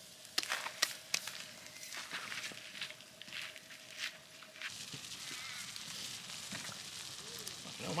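Wood campfire crackling, with a handful of sharp snaps and pops in the first few seconds, then settling to a quieter hiss.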